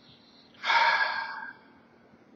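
A man's deep, audible breath lasting about a second, starting about half a second in.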